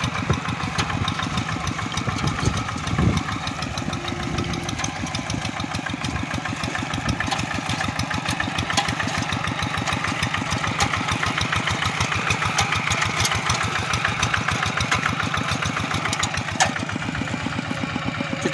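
Two-wheel hand tractor's single-cylinder diesel engine running steadily under load as it works a muddy rice paddy, with a fast, even chugging beat.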